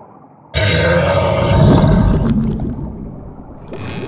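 Cartoon roar sound effect for an angry shark, a loud, rough, deep growl that starts suddenly about half a second in and fades away over the next couple of seconds.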